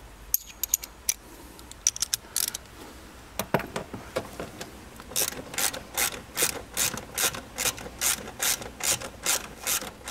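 Hand ratchet with a socket extension clicking as it turns a bolt under the dashboard, a few scattered clicks at first, then about halfway through a steady run of quick strokes, about three clicks a second.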